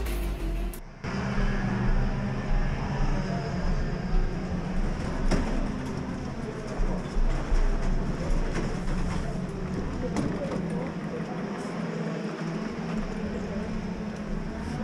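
Electronic music cuts off about a second in. After it, two-stroke racing kart engines run in the pit area: a steady drone with a few louder swells where engines are revved.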